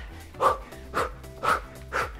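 Workout music with a steady beat, and a woman's short, sharp exhalations about twice a second, one with each hook punch she throws.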